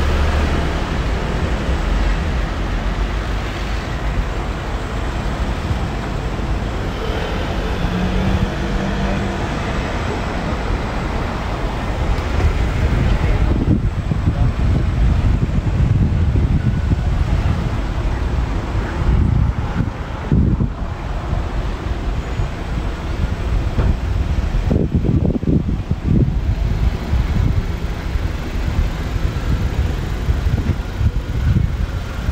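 City street traffic: cars driving past with a continuous low rumble that grows louder about halfway through.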